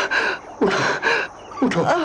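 Short, strained gasps and moans from a wounded young man's voice, acted as pain from an arrow wound, three outbursts in quick succession. Near the end a man's voice pleads "उठो, उठो" (get up, get up).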